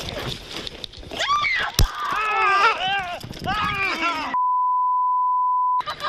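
Raised, shouting voices during a scuffle, with a single sharp crack about two seconds in. Near the end everything else cuts out and a steady, high censor bleep holds for about a second and a half.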